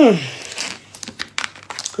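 A woman's loud, falling "hmm", followed by a scatter of short crackling clicks and rustles.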